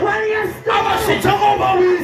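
A man preaching in a loud, raised, shouting voice into a handheld microphone, amplified through the hall's sound system.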